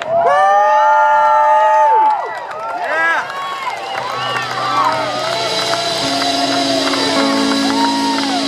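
A live electric blues band closing a song: the electric guitar holds a long, slightly bending note for about two seconds, then the crowd cheers and whoops while a final chord rings on.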